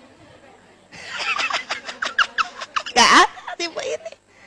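Faint room tone for about a second, then a woman's voice over a microphone, talking and laughing, loudest in a burst near the end.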